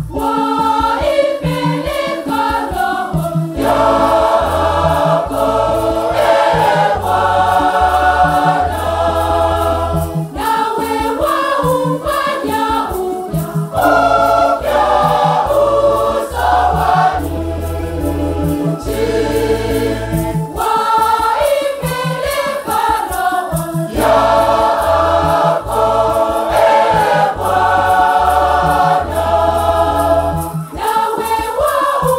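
Large mixed choir of men and women singing a Swahili Catholic hymn, over a steady low bass accompaniment and a regular beat.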